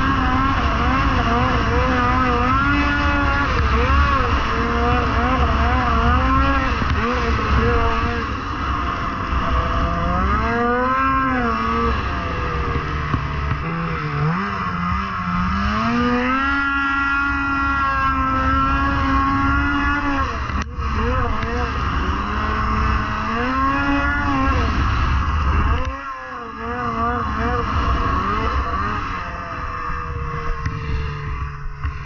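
Polaris IQR 600R snowmobile's two-stroke twin engine under way, its pitch rising and falling as the throttle is worked and held high for a few seconds in the middle. A single sharp knock about two-thirds of the way through, and the engine note drops off briefly near the end.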